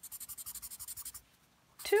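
Colored pencil shading on paper in quick back-and-forth scribbling strokes, about ten a second. The strokes stop a little past a second in.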